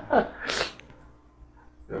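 A man's single short, sharp burst of breath about half a second in, following the tail of a laugh.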